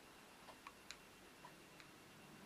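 Near silence: faint ticking about once a second, with a few extra light clicks in between.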